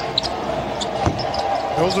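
Basketball game court sound: short high sneaker squeaks and a single sharp ball-bounce knock about a second in, over a steady arena background.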